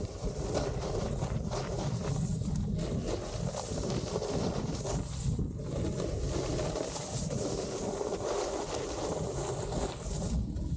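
Wind buffeting the microphone of a snowboarder riding fast down a groomed slope, mixed with the board scraping over packed snow. It is steady and unbroken throughout.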